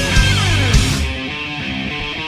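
Instrumental heavy metal: a pitch glide sweeps downward about half a second in, then the full band thins out about a second in, leaving distorted guitar notes ringing on their own.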